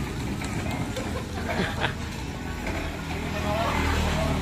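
Outdoor street sound: people talking in the background over a steady low rumble, with one short knock a little under two seconds in.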